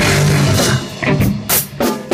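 Acoustic drum kit played in an improvised band jam, over held low notes from other instruments. About 0.7 s in the full sound cuts off, leaving three separate drum and cymbal hits.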